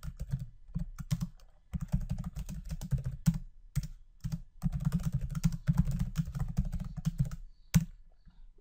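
Typing on a computer keyboard: quick runs of keystrokes in three or four bursts with short pauses between them, and one sharper key strike near the end.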